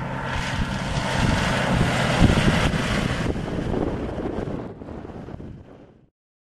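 Four-wheel-drive SUV driving along a road toward and past the microphone: its engine and tyre noise builds over the first two seconds, then dies away to nothing by the end, with wind buffeting the microphone.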